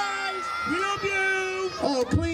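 Voices singing long held notes that glide up and down, at times two pitches at once.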